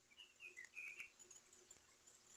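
Near silence, with a few faint, short, high-pitched chirps in the first second.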